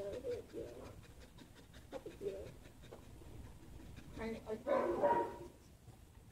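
A dog panting softly, with quiet human talk about four seconds in.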